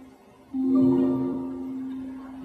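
Symphony orchestra playing the quiet introduction to an operatic aria. After a brief pause, a held chord comes in about half a second in and slowly fades.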